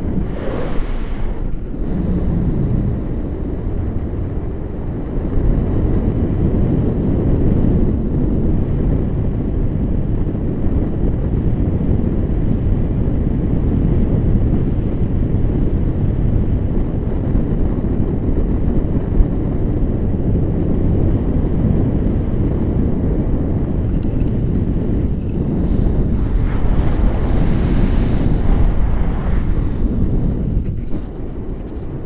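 Wind buffeting the camera microphone of a tandem paraglider in flight: a steady low rumble, swelling into louder, hissier gusts about a second in and again near the end.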